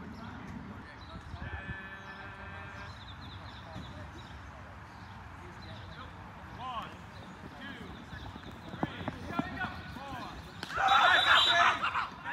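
Players' voices calling out across an open field, with a loud burst of shouting near the end. A few sharp knocks come just before it.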